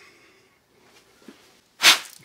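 Mostly quiet, then near the end a single short, sharp burst of breath noise from a person, like a quick exhale or sniff.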